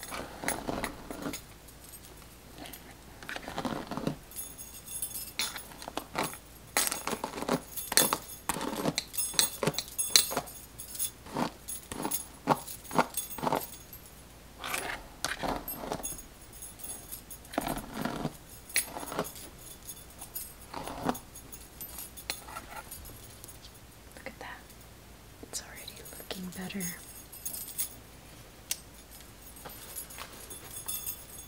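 Plastic-bristled paddle detangling brush raking through a doll head's synthetic hair, with a stack of metal bracelets jangling on the brushing wrist. Irregular strokes come in quick runs, busiest through the middle and sparser near the end.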